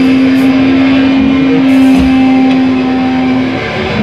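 Hardcore band playing live: a distorted electric guitar holds one long, steady note for about three and a half seconds over a low rumble of the band, with the cymbals mostly dropping out.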